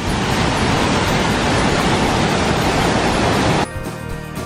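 Waterfall cascading over boulders: a loud, steady rush of water that cuts off suddenly near the end as music returns.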